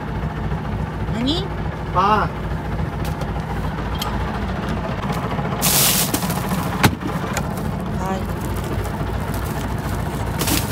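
A small fishing boat's engine idling steadily with a low, even pulse. About six seconds in there is a short rustling hiss, then a single sharp click.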